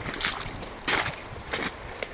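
Footsteps on a wet, muddy forest path, three evenly spaced steps.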